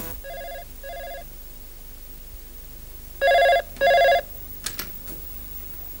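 Telephone ringing in a double-ring cadence: a faint double ring at the start, then a louder double ring about three seconds in. A couple of faint clicks follow.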